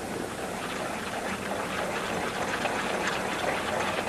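Ice-rink ambience: a steady hiss of skate blades on the ice under a low murmur from watching onlookers, growing slightly louder.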